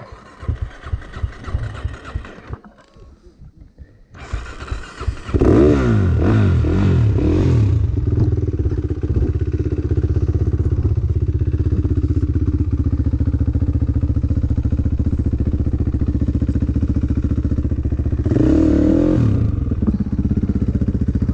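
Gas Gas dirt bike engine being restarted: a couple of seconds of irregular cranking knocks, then it catches about five seconds in, is revved a few times and settles into a steady idle, with one more short rev near the end.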